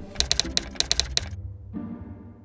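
A rapid run of keyboard-typing clicks, about ten in a second, as a title types out on screen, over a short music jingle with held notes.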